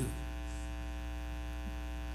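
Steady electrical mains hum from the sound system: an unchanging low buzz with many evenly spaced overtones.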